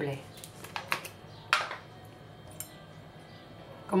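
Light clicks and clinks of a small spoon and spice jar being handled over a stainless steel mixing bowl, with one brief louder rattle about a second and a half in.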